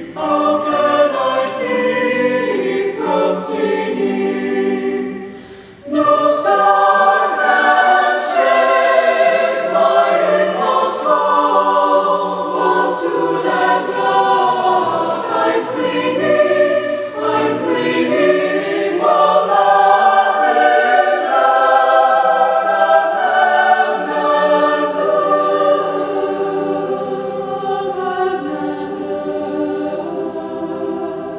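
A mixed high school choir, male and female voices, singing together in parts. About five seconds in the sound fades away, then the full choir comes back in strongly.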